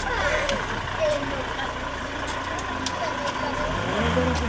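A car engine idling low and steady at walking pace, with people talking over it.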